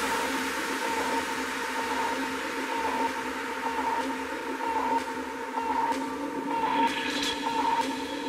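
Minimal techno in a DJ mix, in a sparse stretch: sustained droning tones under a wash of hiss, with no strong beat.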